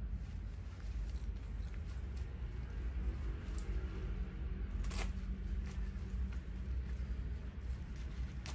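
Rustling of a nylon rain jacket as hands work its two-way front zipper and hem cord, with a single sharp click about five seconds in, over a steady low hum.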